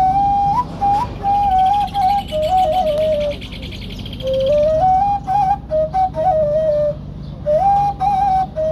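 Ney, an end-blown Persian-origin flute made here from recycled aluminium tubing, playing a slow Arabic meditation melody of held notes with small stepwise turns. It pauses for breath about three and a half seconds in and again near seven seconds.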